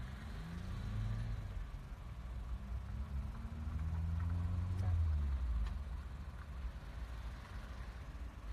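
Low rumble of a car heard from inside the cabin in slow traffic, the engine note rising and falling a few times. It is loudest about four to five seconds in.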